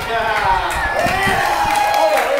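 A crowd of onlookers cheering and calling out, several voices overlapping, with some long drawn-out shouts.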